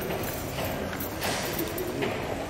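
Footsteps of people walking on stone paving, an irregular clatter of shoes.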